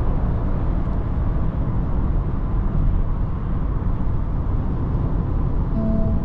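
Steady road and wind noise inside the cabin of a 2024 Range Rover Evoque cruising at motorway speed: an even, low rush with no changes in pitch or level.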